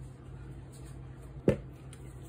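A white plastic mixing bowl set down on the table: one sharp knock about one and a half seconds in, over a steady low hum.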